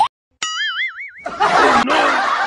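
A cartoon 'boing' sound effect: after a brief dead silence and a click, a springy twanging tone wobbles up and down in pitch, the wobble growing wider, for under a second. Busy street noise and voices come back about a second and a quarter in.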